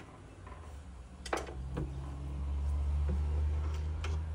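A few faint metal ticks and one sharper click about a second in, from a scriber working on a steel Morse taper. Under them a low hum grows louder in the second half.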